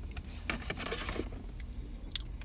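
Quiet eating and handling noises of someone eating a cookie from a paper bag: a short stretch of soft rustling and small clicks about half a second in, over a low steady hum inside a car.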